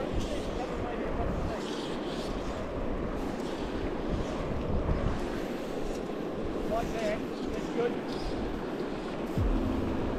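Steady rush of a shallow river, with wind buffeting the microphone in low gusts.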